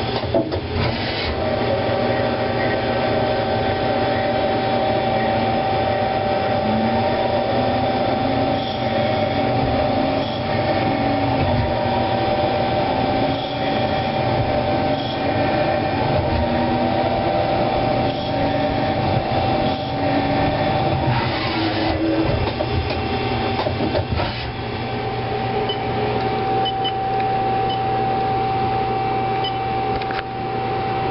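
CNC lathe running as it turns a Delrin (acetal plastic) bar: a steady machine hum with a constant high whine over it. In the middle a fainter tone wanders up and down in pitch as the cut goes on, with a few short knocks near the end.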